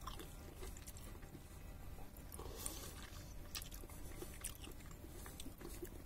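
Faint chewing of a bite of Coscia pear: soft wet mouth sounds with scattered small clicks.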